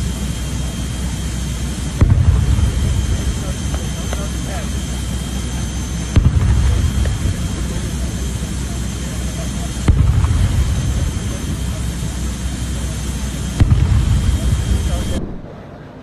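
Jet aircraft on the apron running: a steady high whine over a loud rumble. The level jumps abruptly every few seconds at edits, and the sound cuts off about a second before the end.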